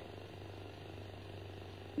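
Faint room tone of the recording: a low steady hum with light background hiss.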